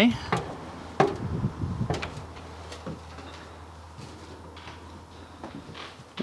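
Footsteps knocking on a fifth-wheel trailer's entry steps and floor as a person climbs in: a few irregular knocks, the loudest about a second in, over a low steady hum.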